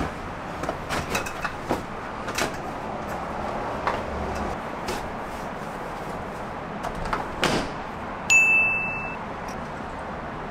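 Knocks, thuds and rustling as bagged inflatable kayaks are stuffed into a plastic deck storage box. About eight seconds in there is a loud clunk with a short ringing ding.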